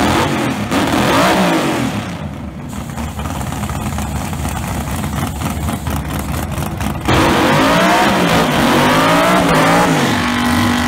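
Drag car engine revving hard during a burnout. There is a short rev that rises and falls about a second in; from about seven seconds in it turns louder, the revs bouncing up and down.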